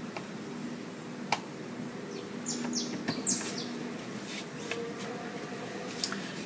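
Handling of a picture frame and its backing on a cutting mat: one sharp click a little over a second in, light rustles, and a few short high chirps near the middle, over a low steady hum.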